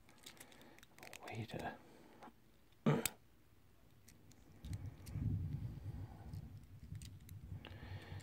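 Small plastic toy robot parts, Transformers Micromaster figures, clicking and snapping as they are twisted and fitted together by hand. A low rumble runs through the second half.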